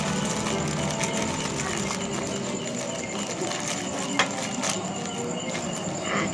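Small clicks and faint crackling of a plastic wrapper being picked open by hand around a packet of snap-pop throw poppers, the sharpest click about four seconds in, over a steady background of faint music and distant voices.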